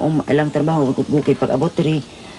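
Speech only: a woman talking steadily in a Philippine language.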